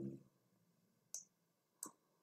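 Near silence with two faint, short clicks, about a second in and near the end.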